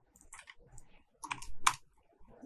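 Computer keyboard typing: a short run of separate keystrokes, the loudest few about a second and a half in.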